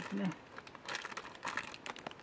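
Plastic pastry wrapper crinkling as it is handled, in two short clusters of crackles about a second in and again just before the end.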